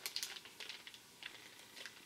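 Plastic bait packaging being handled, crinkling and clicking in the hands. A quick cluster of light ticks comes in the first second, then faint scattered rustling.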